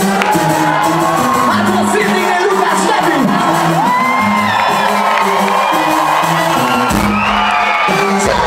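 Live band music played loud over a hall PA, with a held bass line under it and the audience whooping and cheering. About seven seconds in a heavy low bass comes in.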